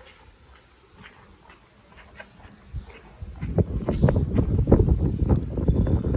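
Faint footsteps, then from about three seconds in a loud, irregular low rumbling with knocks: handling and buffeting noise on the microphone while a car's engine lid is opened.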